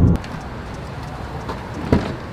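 Car-cabin road and engine drone at highway speed, cut off a moment in. Then steady outdoor background noise with a few faint clicks and a short knock near the end.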